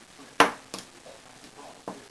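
A sharp clack from the syringe-driven hydraulic model chair and its syringes as they are worked by hand, about half a second in, then two lighter clicks.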